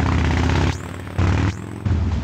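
Steady low engine rumble of street traffic, dropping out abruptly twice for about half a second each.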